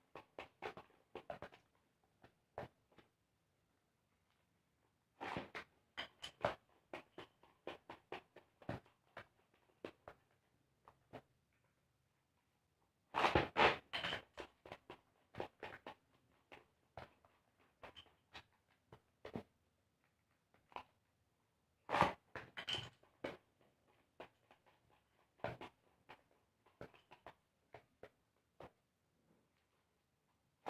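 Homemade cardboard battle tops (Beyblades) clashing as they spin: irregular light clicks and knocks that come in clusters, loudest about 13 and 22 seconds in, with short quiet gaps between.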